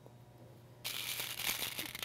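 Crinkling, rustling noise, as of paper or plastic being handled, starting about a second in and running on with small crackles.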